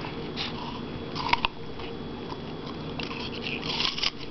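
Young puppy biting and crunching a piece of raw apple: short crisp crunches about half a second in and again around a second in, then a quicker run of crunching near the end.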